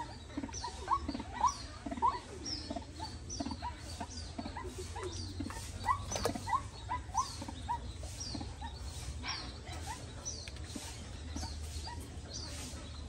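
Birds chirping repeatedly, short squeaky chirps about two a second, some low and rising, others high and falling, over a steady low hum.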